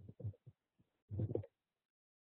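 A man's voice making two brief, low, wordless murmurs, one at the start and one about a second in.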